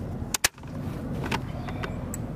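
A single sharp metallic clack about half a second in, with a few lighter clicks after it: an M249 light machine gun's feed cover being snapped shut on a belt of linked ammunition, over a steady low rumble.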